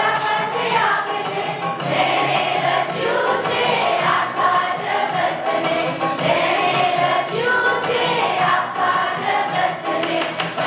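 A group singing a Christian song over music with a steady beat.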